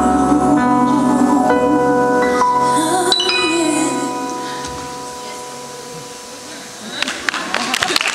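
A woman singing live over electric keyboard chords, her last note ending about three seconds in; the keyboard's final chord rings on and fades away, and audience applause and cheering break out about seven seconds in.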